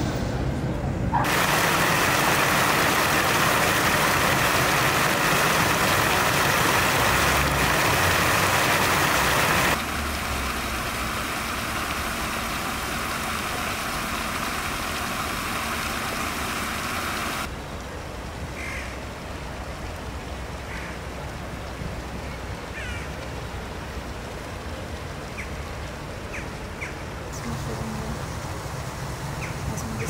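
A steady rushing noise, loud for the first third, then dropping in two sudden steps. After that comes quieter outdoor ambience with a few short, high chirps.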